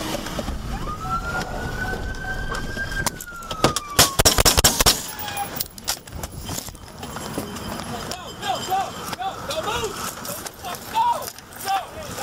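A siren wails, rising and then falling over the first few seconds. About three and a half seconds in comes a rapid burst of about ten rifle shots fired from inside a vehicle through its open window, the loudest sound, lasting just over a second; shouted voices follow near the end.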